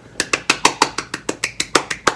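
A rapid, even run of about fifteen sharp hand claps, roughly seven a second.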